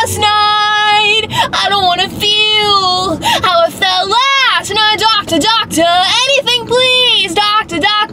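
A young woman singing loudly in long held notes that waver and slide in pitch, phrase after phrase with short breaks.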